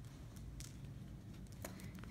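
Faint handling noise of a rice-filled fuzzy sock being squeezed and twisted while a rubber band is put around it, with a couple of soft clicks, over a low room hum.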